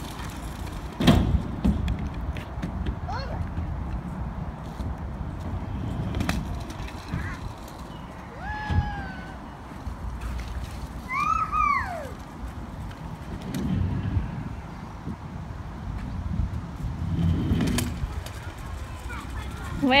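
A child's kick scooter rolling over a concrete skate park surface, with a low steady rumble and a few sharp knocks as the wheels hit bumps and ramp edges. A child's voice calls out twice near the middle.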